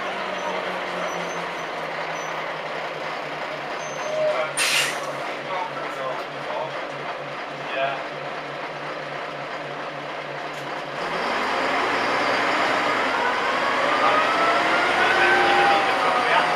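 Bus engine heard from inside the passenger cabin, first running at a steady pulsing idle, with a short sharp hiss of air about four seconds in. From about eleven seconds the engine works harder and gets louder, with rising whines as the bus pulls away.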